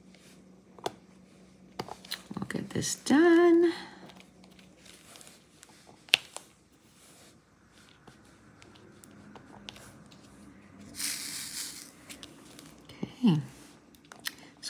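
Light clicks and taps of a diamond painting pen pressing resin drills onto the canvas, with a short hummed 'mm' about three seconds in and a brief rustle of plastic film near the end.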